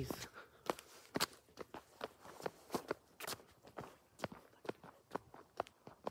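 Footsteps of a person walking on a paved sidewalk and street at a steady pace, about two steps a second.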